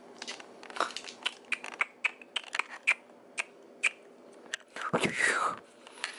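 A dachshund chewing and biting at a silicone finger toothbrush while its teeth are brushed: a run of short, sharp clicks and crunches, then a brief high whine falling in pitch about five seconds in.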